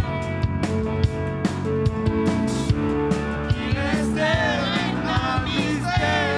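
Live band with electric bass and drums playing a song at a steady beat, with amateur singers singing along into microphones, most clearly in the second half.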